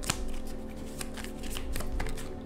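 A tarot deck being shuffled by hand: a quick, irregular run of card snaps and clicks.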